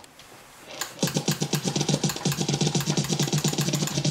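Vinyl record scratched on a DJ turntable. After a quiet first second, a loud, fast run of back-and-forth scratches, about ten a second, plays over a steady low tone.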